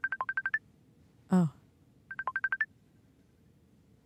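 Facebook incoming video-call ringtone: a rapid run of short high beeps, then a second run about a second and a half later.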